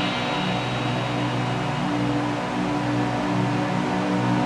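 Music for a gymnastics floor routine playing, with long held notes and no clear beat.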